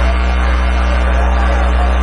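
Steady low electrical hum, typical of mains hum on a public-address system, loud and unchanging in the gap between spoken phrases.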